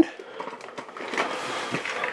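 A hand rummages inside a fabric backpack and draws out a small plastic toy vehicle: a soft rustle with a few faint clicks.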